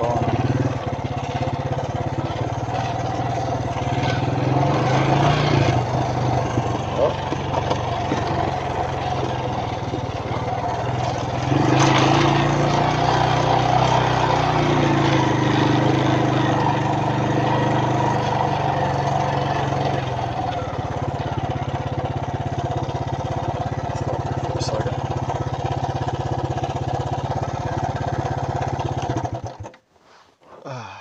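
Suzuki LT160 Quad Runner's single-cylinder four-stroke engine running steadily as the quad is ridden. It gets louder for several seconds from about a third of the way in, then settles back, and the sound cuts off abruptly just before the end.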